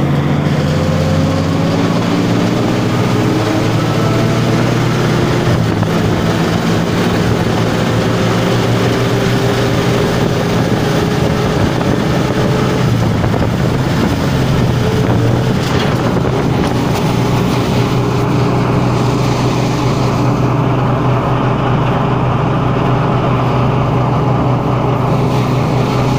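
Small motorcycle engine running steadily while riding along a road, its pitch rising and falling slightly, with wind noise on the microphone.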